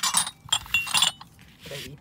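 Glass ashtrays clinking against each other as they are picked up and set down, several sharp clinks with a short ring in the first second or so.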